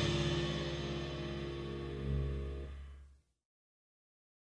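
Jazz recording with tenor saxophone ending on a held final chord that fades away, then cuts off suddenly into silence a little after three seconds in.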